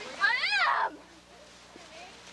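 A young child's single high-pitched call, rising and then falling in pitch and lasting under a second, followed by quiet background.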